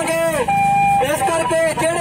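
Speech: a man's voice amplified through a handheld microphone and megaphone loudspeaker, with one sound held as a steady note about half a second in.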